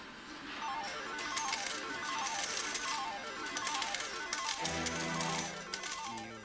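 Video poker machine sounding a run of quick stepping electronic beeps over a clatter of coins. About four and a half seconds in, a low sustained musical chord comes in beneath it.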